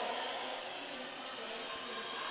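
Steady, low background din of a roller derby bout in a large hall: crowd murmur mixed with skates rolling on the track floor.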